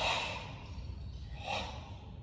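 Two short, forceful exhalations from a karate practitioner, one right at the start and a softer one about a second and a half in.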